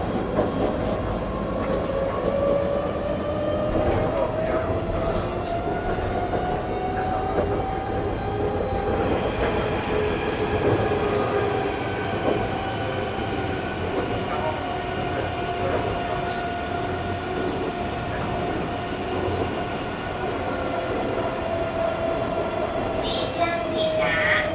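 Kaohsiung light-rail tram (CAF Urbos 3) under way, heard from inside: the traction drive's whine climbs in pitch over the first several seconds as it gathers speed, then holds steady over the rumble of wheels on rail, easing down a little near the end.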